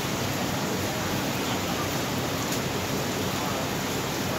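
Steady, even hiss of background noise with no distinct sounds standing out.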